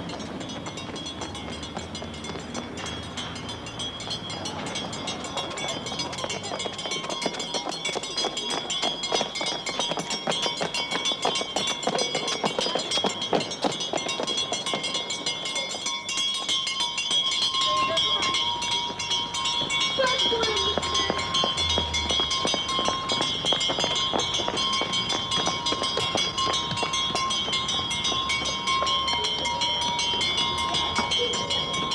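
A school bell ringing continuously in rapid strokes, faint and distant at first, then growing steadily louder as it is approached.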